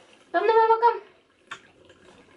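A short, high-pitched wordless vocal sound lasting about half a second, then a light tap about a second later and faint water sloshing in a plastic baby bathtub.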